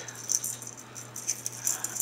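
Faux pearl beads rattling and clicking against each other and a small metal tin as fingers pick through them, in a few short, irregular clicks.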